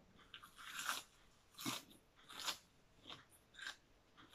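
Faint, irregular crunching as a person bites and chews a sprig of raw greens, about five crisp crunches.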